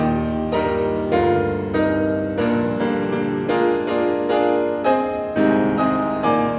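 Classical solo piano playing full, loud chords in a steady pulse, about two a second, each struck sharply and left to ring.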